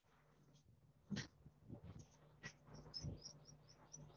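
Near silence: faint room tone with a few soft knocks from about a second in and a quick run of faint high chirps near the end.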